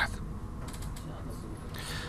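A short pause between words: steady low background hum and faint room noise, with a few faint soft ticks, such as small desk or mouse-handling noises.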